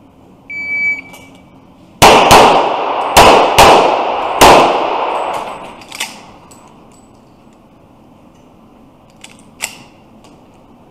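A shot-timer start beep, then five gunshots fired in quick succession, two fast pairs and a single shot, each with a reverberant tail in an indoor range. A couple of faint knocks follow later.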